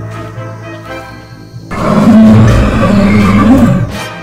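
A cartoon dinosaur roar sound effect, loud and about two seconds long, starting a little before halfway through, over background music.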